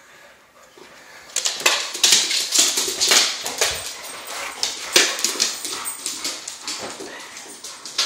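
Two boxer dogs playing rough over a soccer ball: dog vocal noises mixed with scuffling and knocks on a hardwood floor. It is quiet at first and turns busy and loud about a second and a half in.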